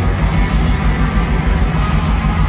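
Pagan metal band playing live: distorted electric guitars over drums, with a loud, dense low end.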